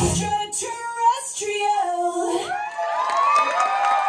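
A dance track's beat cuts off, leaving a last sung vocal line on its own, then an audience starts whooping and cheering about two and a half seconds in as the routine ends.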